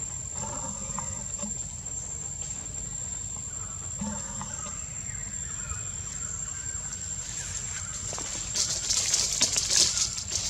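Forest ambience: a steady high-pitched insect drone over a low rumble, with a few faint short calls. From about eight and a half seconds a louder crackling rustle comes in.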